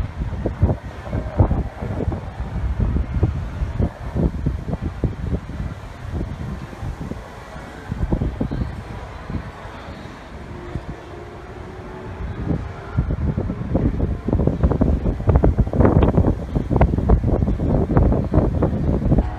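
Wind buffeting the microphone in uneven low gusts, getting heavier near the end.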